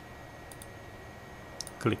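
Two faint computer mouse clicks, one about half a second in and one near the end, over a faint steady hiss.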